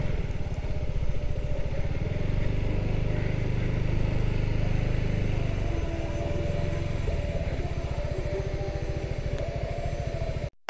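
Zontes 350E scooter's single-cylinder engine running at low speed under a slow ride, a steady low pulsing that swells a little in the middle and eases off near the end.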